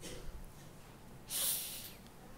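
A man's short, sharp breath in through the nose, picked up close by the microphone, lasting about half a second a little past the middle; otherwise low room tone.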